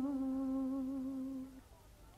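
A woman's voice in Vietnamese ngâm thơ poetry chanting, holding the last word of a line, 'vàng', on one long steady note that fades out about a second and a half in.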